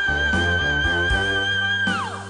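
Male singer holding a single very high, pure note with a gentle vibrato over a band's bass and chords, in a jazz-styled pop cover. He slides down off it near the end.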